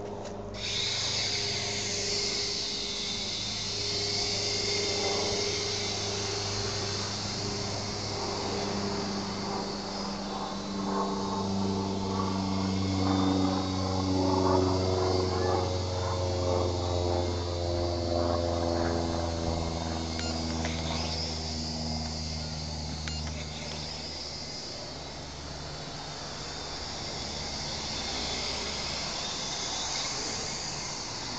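Mini quadcopter's small electric motors and propellers whining at a high pitch, starting up about half a second in, the pitch rising and falling as the throttle changes in flight.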